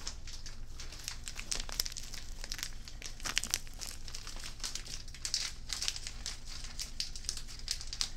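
Irregular crinkling of a handled package or wrapper, made of many small close-up crackles that keep on without a break.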